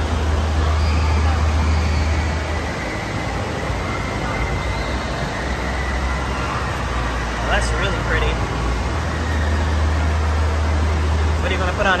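Busy room ambience: background voices over a strong, steady low rumble that eases off for a few seconds in the middle and returns.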